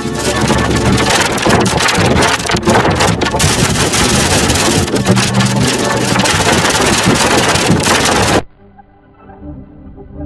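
Heavily distorted, effects-processed logo jingle audio, a loud dense noisy wash with little clear pitch, which cuts off sharply about eight and a half seconds in to quieter sustained synthesizer music.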